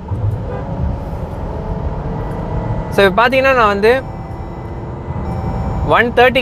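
Low, steady cabin rumble of the 2023 Jeep Grand Cherokee's two-litre engine and tyres while it is being driven at speed. A man's voice is heard briefly about three seconds in.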